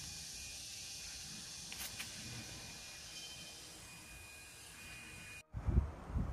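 Steady faint background hiss with a thin high drone, like insects. Near the end the sound drops out for a moment, then low rumbling bumps of handling or wind noise on the microphone begin.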